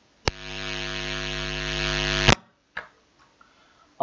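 Electrical mains hum: a steady buzz that switches in with a sharp click, grows slightly louder for about two seconds, and cuts off with another click, followed by a faint click.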